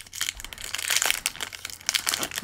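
Foil wrapper of a Pokémon booster pack crinkling as it is pulled open by hand, a run of irregular crackles.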